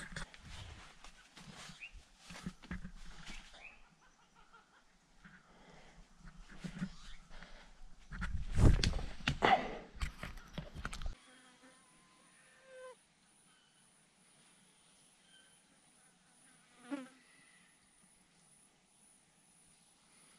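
Footsteps and rustling as someone scrambles over rocks through dry leaves and scrub, with a loud scuffing burst in the middle. After about eleven seconds it changes abruptly to a faint, steady, high-pitched insect buzz with a few short bird chirps.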